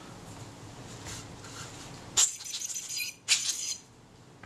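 Small metal camera parts clinking as they are handled: a sharp clink with a short rattle about two seconds in, and a second clinking burst about a second later.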